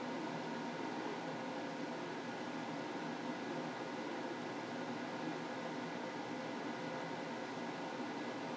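Steady hiss with a faint constant hum: kitchen room tone with no distinct sounds.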